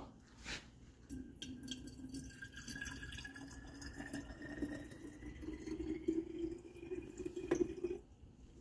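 Water poured from a glass carafe into the water tank of a Capresso espresso and cappuccino machine, a steady trickling fill whose pitch rises slowly as the tank fills.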